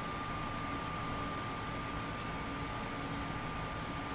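Steady room noise from a loud air conditioner, an even hiss with a low hum and a faint steady whine.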